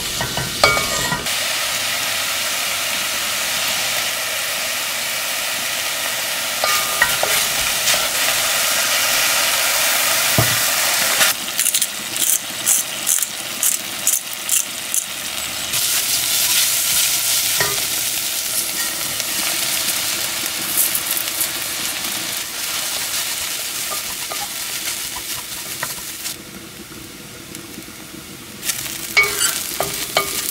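Mushrooms sizzling as they sauté in butter in a pot, with a wooden spatula stirring and scraping across the pot bottom. In the middle there is a run of rhythmic stirring strokes about two a second, and near the end the sizzle quietens before the spatula scrapes through rice grains.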